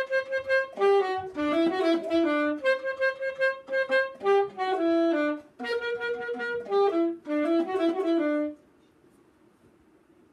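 Solo saxophone playing a melody of separate notes, some held and some quick, that stops about eight and a half seconds in.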